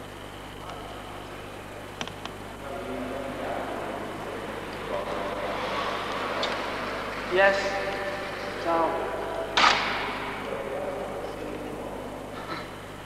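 Indistinct voices talking over a steady low hum, with two louder vocal outbursts about seven and a half and nine and a half seconds in.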